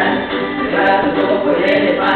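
A class singing a song together in chorus, several voices carrying the melody.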